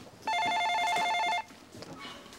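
Office desk telephone ringing with an electronic warbling trill, two pitches alternating rapidly, for one ring of about a second.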